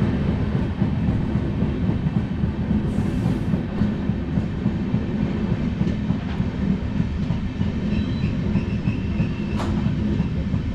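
A passenger train running at speed, heard from inside a coach. A steady rumble with a continuous rattle and clatter of the wheels on the track.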